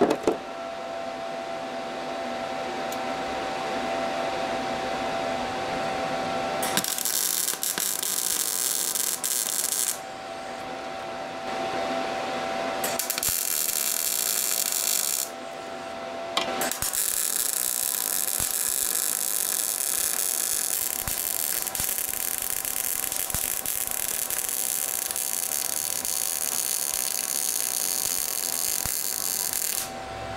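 MIG welder with gas shielding welding steel exhaust tubes: three runs of arc crackle and hiss, a short one about seven seconds in, another around thirteen seconds, then a long one from about seventeen seconds to the end. A steady hum sounds between the runs.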